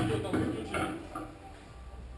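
Indistinct voices of people talking in a billiard hall, loudest in the first second and then trailing off, over a low steady room hum.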